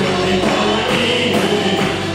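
Tamil Christian worship song sung by a group of voices over a band with drums.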